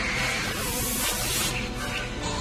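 A long hissing spray over film-score music, cutting off about a second and a half in.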